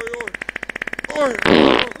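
A rasping, fart-like buzz under a voice exclaiming "oj, oj", with a louder burst about a second and a half in.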